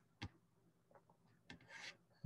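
Near silence: room tone, with one faint click shortly after the start and a faint brief rustle near the end.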